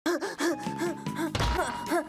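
Cartoon background music with a boy's voice making short, rhythmic hums, about two or three a second, and a low thud about one and a half seconds in.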